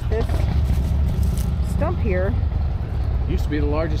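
Low, steady rumble of road traffic on a town street, with a couple of short spoken phrases about two seconds in and near the end.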